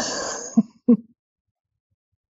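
A woman's short, breathy laugh: a rush of breath followed by two quick voiced 'ha's.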